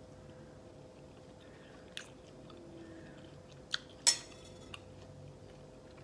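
Quiet chewing of a mouthful of hard dried omena fish, with a few small clicks and one sharp clink just after four seconds in as a metal fork is set down on a ceramic plate, over a faint steady hum.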